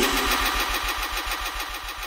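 An engine-like low rumble pulsing about ten times a second under a steady hiss, fading steadily away.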